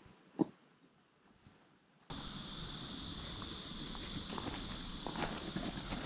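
Outdoor ambience: quiet at first, with a few faint knocks and one sharp tap about half a second in, then about two seconds in a louder steady high hiss cuts in suddenly and holds.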